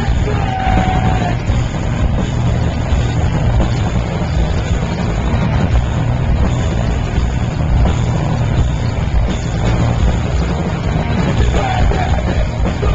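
Hardcore punk band playing live: distorted guitars, bass and drums at full volume, dense and overloaded on a small camcorder microphone, with a shouted vocal note near the start.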